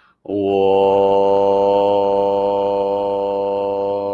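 A man chanting one long held note on a single vowel, steady in pitch, starting a moment in and fading near the end; it is a chant practice meant to vibrate the body's cells.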